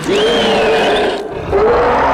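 A mummy creature's monstrous roaring scream, a movie sound effect: one long rough roar, a short dip, then a second swell that cuts off suddenly.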